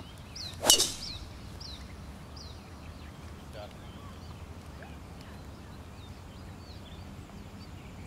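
A golf driver striking a ball off the tee: one sharp crack just under a second in. Birds chirp repeatedly in the background.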